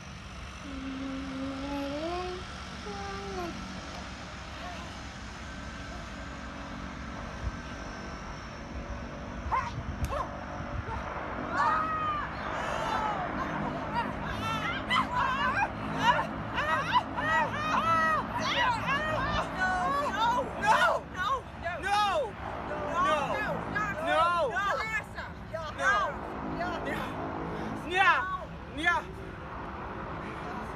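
Several voices making wordless vocal sounds, phonetic sounds rather than speech. A few slow sliding tones come near the start, and from about eleven seconds in there is a dense, overlapping stretch of short rising-and-falling cries.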